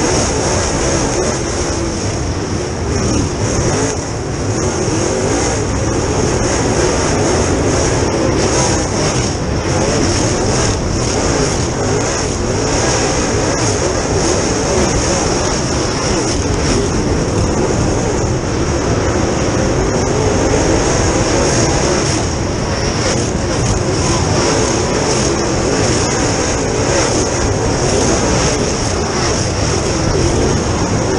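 Dirt Super Late Model's V8 racing engine running hard, heard from inside the cockpit, its pitch rising and falling slightly as it works through the laps, with a steady high hiss over it.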